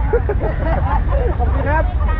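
Several people's voices talking and calling out, overlapping one another, over a steady low rumble.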